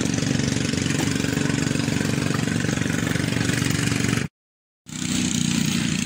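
Small rabeta motor, the long-tail engine of a wooden river canoe, running steadily under way. The sound cuts out completely for about half a second a little after four seconds in, then the engine is back.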